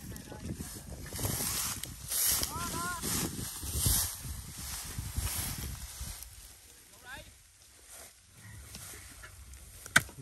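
Long-handled shovels chopping and scraping into dry, packed earth to dig out a field-rat burrow: a run of uneven thuds and scrapes, loudest about four seconds in, thinning out in the second half.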